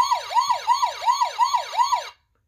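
Electronic police-siren sound effect from the Sheriff Chuck button of a Tonka play-a-sound book's sound panel: a siren sweeping sharply down in pitch, seven times in quick succession.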